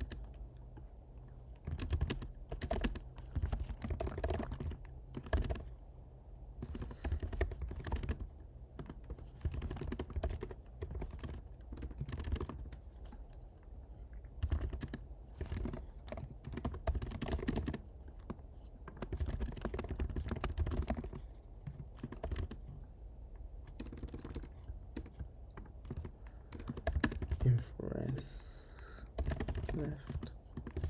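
Computer keyboard being typed on, fast runs of key clicks broken by short pauses.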